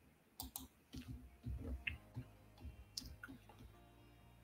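A few faint, scattered clicks of a computer mouse while browsing at a desk, with low soft thuds of desk handling between one and two seconds in.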